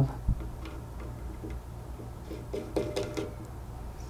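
A few faint, light ticks and clicks as a black control knob is handled and set onto the threaded end of a valve spool on a metal panel, over a steady low hum.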